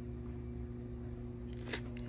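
Steady low hum with a single brief click near the end from a hand handling a plastic VHS clamshell case.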